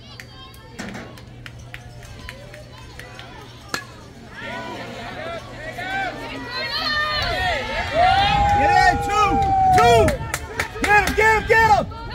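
A bat cracks against a pitched baseball a little under four seconds in, then spectators shout and cheer, building up, with one long drawn-out yell, as the batter runs.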